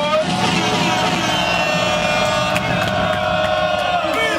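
A man's voice through the club PA holding one long, steady shouted note.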